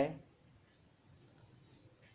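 The end of a man's spoken word, then a pause of near silence with room tone and one faint click partway through.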